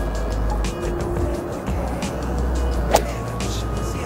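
One sharp crack of an iron striking a golf ball about three seconds in, over background music and a steady low rumble of wind on the microphone.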